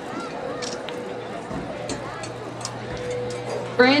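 Crowd chatter from spectators at an outdoor football stadium, with a steady hum underneath. Near the end the announcer's voice comes in loudly over the public-address system.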